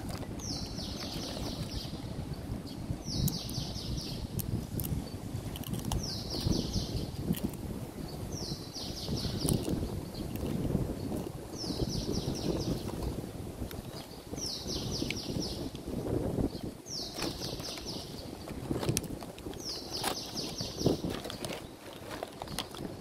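A high buzzing trill, repeated eight times at roughly even spacing, each phrase about a second and a half long, over a steady low outdoor rumble.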